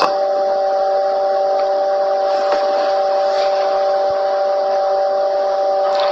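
A steady electronic tone made of three held pitches, lasting about six seconds and cutting off suddenly, over a faint hiss.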